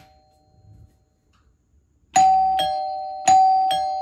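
Mechanical doorbell chime box ringing: two ding-dong pairs, a higher note then a lower one, starting about two seconds in, each strike ringing on and fading. It is being rung by a G4 video doorbell, a sign that the wiring and the doorbell's mechanical chime setting now work.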